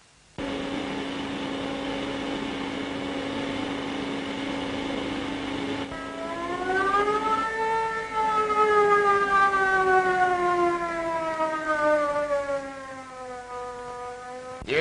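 Steam-blown mill hooters sounding. One holds a steady note. About six seconds in a second, louder hooter comes in, its pitch rising and then slowly sagging as it blows on.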